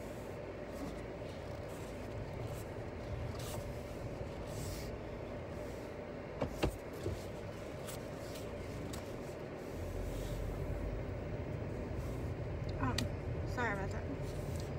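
Car cabin noise while driving: a steady low rumble of road and engine that gets louder about ten seconds in. A few sharp clicks come about six and a half seconds in.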